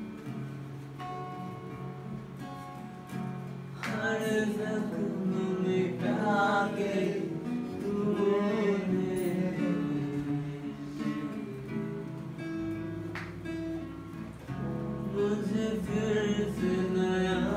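A live Hindi worship song played on acoustic guitar and keyboard. The first few seconds are instrumental, with held keyboard chords under the guitar; a voice comes in singing from about four seconds in, eases off shortly before the end, and picks up again.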